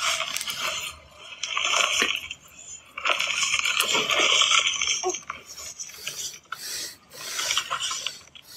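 A plastic bag crinkling and rubbing as it is handled close to a phone's microphone, in uneven stretches with light clicks.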